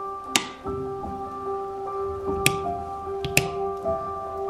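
Wall light switch and plug socket switches clicking: a sharp click just after the start, another about halfway through and a quick double click near the end, over background music.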